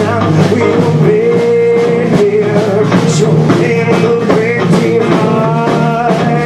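A live rock band playing loudly: electric guitar, bass guitar and drum kit, with bending guitar notes over a steady beat.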